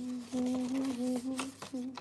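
A woman humming a tune to herself in held notes that step up and down, stopping shortly before the end, with a few light taps over it.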